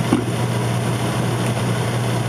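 Steady background hum and hiss with a constant low drone, unchanging throughout, from a machine running in the room.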